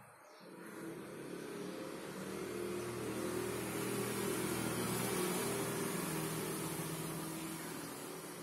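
A motor vehicle passing by: its engine sound swells over the first few seconds, peaks about halfway through, then fades.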